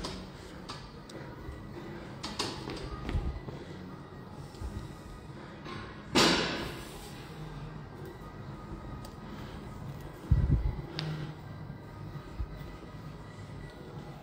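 Gym80 plate-loaded pulldown machine in use, with a short rushing noise about six seconds in and a low thud about ten seconds in, over faint background music in a large gym hall.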